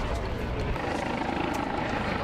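Outdoor crowd ambience: scattered voices of a milling crowd over a low rumble that eases off a little under a second in.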